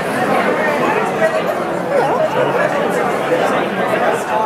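Crowd chatter: many people talking at once at a steady level, with no single voice standing out.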